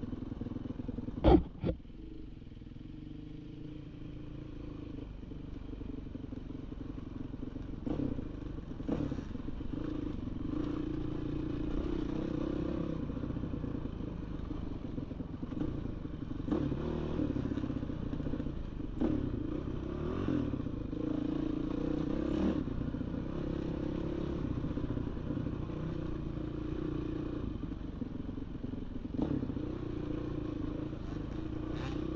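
Off-road dirt bike engine running at a fairly steady pace on a bumpy trail, heard from the bike itself, with scattered knocks and clatter. Two sharp knocks about a second and a half in are the loudest sounds.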